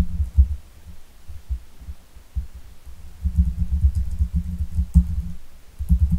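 Typing on a computer keyboard, heard mostly as irregular dull low thuds with a few faint clicks.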